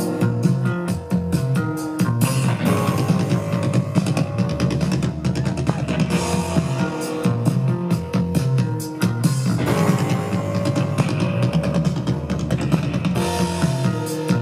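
Live rock band playing an instrumental passage, with drum kit and electric guitars.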